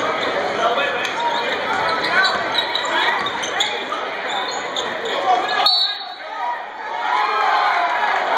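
A basketball bouncing on a hardwood gym floor during a game, with spectators talking, all echoing in a large hall. The low background rumble cuts out suddenly about three-quarters of the way through.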